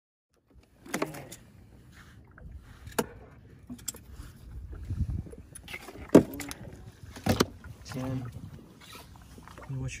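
Sharp knocks and thuds, about five in all and the loudest a little after six seconds in, as rockfish held in a metal lip gripper are moved from a boat's fish box and dropped into a plastic cooler, over a low rumble.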